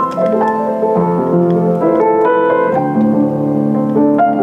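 Steinmayer upright acoustic piano played in flowing chords and melody with its middle practice (celeste) pedal engaged: a felt strip sits between the hammers and the strings, giving a quieter, softened tone.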